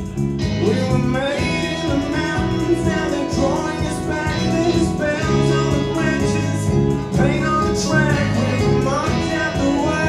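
Live band music: acoustic and electric guitars, bass guitar and drums playing together at a steady beat.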